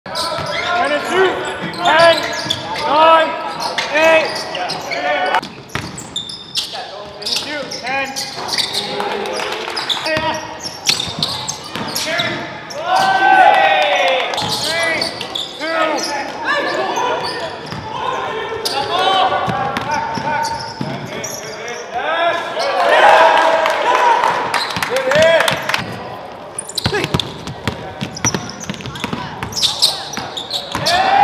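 Live basketball game sound in a gym: the ball bouncing on a hardwood floor and sneakers squeaking in short sharp chirps as players cut, with the room echoing.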